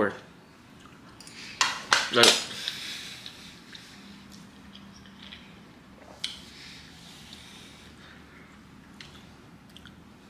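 A few light, isolated clinks of cutlery against a dish during a meal, over low room noise.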